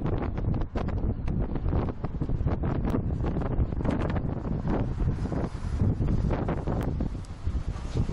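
Wind buffeting the camera microphone from inside a moving vehicle, an uneven low rumble in gusts.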